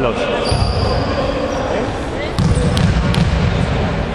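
A basketball bounced on the hall's wooden floor, three quick bounces about two and a half seconds in, echoing in the gym over a background of voices.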